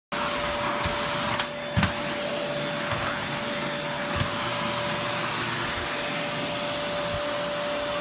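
Stick vacuum cleaner running steadily with a constant hum. A few short knocks sound over it, the loudest about two seconds in.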